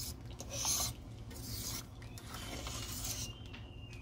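A fork stirring rice and peas in coconut milk in a stainless steel pot, metal scraping the pot in two short spells, over a low steady hum.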